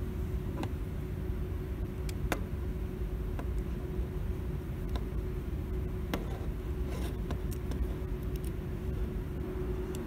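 Steady low background hum with a faint constant tone, broken by a handful of small sharp clicks from a toggle switch's plastic body, metal parts and screw being handled during reassembly.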